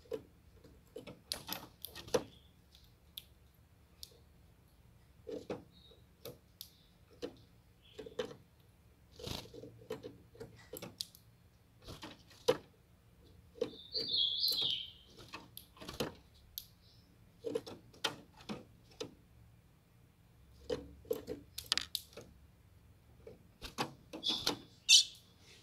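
Young female ultramarine grosbeak (azulão) in a cage: mostly scattered light clicks and taps as she moves about the perches and bars, with one short high call about fourteen seconds in.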